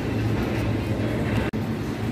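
Supermarket background noise: a steady low hum and rumble, broken by a sudden brief dropout about one and a half seconds in.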